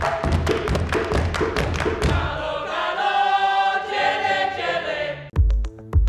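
A group of voices singing together over hand claps and percussion, then holding one long choral chord. Just after five seconds it cuts abruptly to electronic background music with a deep, evenly spaced bass beat.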